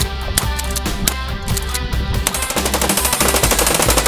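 Background music, with a long, rapid burst of fully automatic fire from a submachine gun playing over it from about halfway in.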